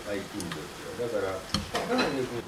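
Sukiyaki pan sizzling at the table under a man's muffled voice, with one sharp click of chopsticks about one and a half seconds in.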